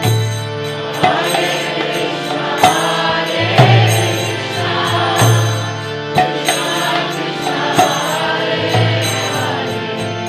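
Harmonium playing held chords under a man's chanted devotional melody, with a few sharp percussion strikes at irregular moments.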